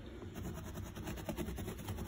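Stiff-bristled hand brush scrubbing carpet pile in quick, even strokes, starting shortly after the beginning, working spotting chemical into a stain.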